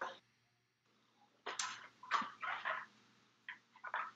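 A person's voice, quiet and hesitant: near silence for about a second, then a few short, soft murmurs much quieter than normal talk.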